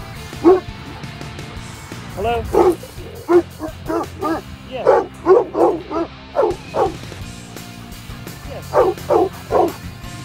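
Cane Corso and pit bull mix barking at another dog across a fence: reactive barking. There is one bark, then a run of about a dozen quick barks, and three more near the end, over background music.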